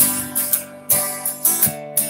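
Steel-string acoustic guitar being strummed, chord strums about every half second, each ringing on between strokes, with no voice.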